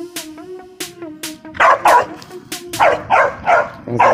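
A dog barking repeatedly in short bursts, starting about a second and a half in, over background music with a steady beat.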